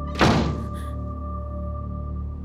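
A single loud thud about a quarter second in, with a short echoing tail and a faint rattle after it. It sits over tense background music with a steady drone.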